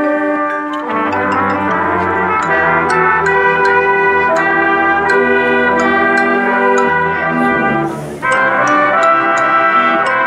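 Brass and percussion orchestra playing: trumpets, trombones and tubas holding chords over percussion strokes, with the low brass coming in about a second in. The music breaks off briefly just after eight seconds, then the full band comes back in.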